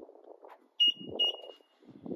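Two short high-pitched electronic beeps about a second in, the second held a little longer, with a low thump under them.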